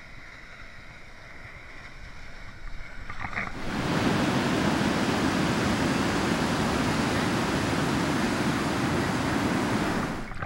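Ocean surf: a quiet, muffled wash of water at first, then a sudden switch to the loud, steady rush of waves breaking onto a beach.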